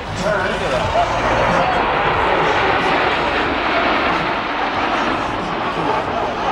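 Jet engine noise from a formation of Alpha Jet trainers flying past: a steady, dense rushing sound that fills in about a second and a half in and holds.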